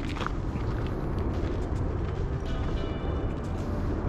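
Steady outdoor background noise, mostly a low rumble, with a few faint thin tones from about two and a half seconds in.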